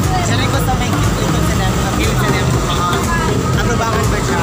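Busy roadside street noise: people talking over a steady rumble of passing traffic.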